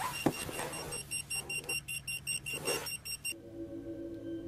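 Rapid electronic beeping, about five short high beeps a second, that cuts off suddenly about three seconds in and gives way to a low steady drone.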